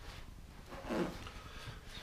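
Faint handling sounds of a plastic worm bin being lifted and moved, with no strong impact.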